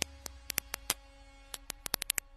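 About ten sharp, irregular clicks over a low steady hum.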